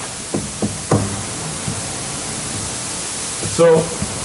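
Three short knocks or taps in the first second over a steady hiss of room noise, then a voice near the end.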